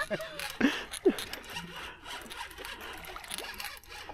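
Fishing reel being cranked while a hooked fish is fought on a bent rod: faint, irregular clicking and scraping. Short faint voice sounds come in the first second.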